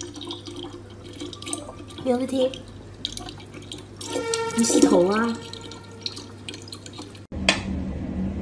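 Tap water running in a thin stream into a plastic bottle, with a person's voice exclaiming twice over it. Near the end the sound cuts and a single sharp metronome tick follows.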